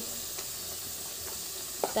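Onion-and-spice paste frying in oil in a steel wok: a steady, quiet sizzle, with a light scrape or two of the metal spatula stirring it.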